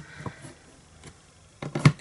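Plastic clicks and knocks from the clear hinged plate of a Stamparatus stamp-positioning tool being handled and swung down: a single click at the start, then a quick cluster of louder knocks near the end.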